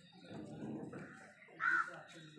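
A crow cawing once, a short call about a second and a half in, over soft rustling of leaves.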